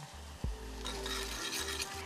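Chopped onion, garlic and serrano peppers with cumin frying in oil in a stainless saucepan while a spoon stirs them. A single spoon clink comes about half a second in, and the faint sizzle grows louder about a second in.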